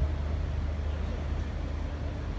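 Outdoor riverside city ambience: a steady low rumble with faint chatter of people along the quay.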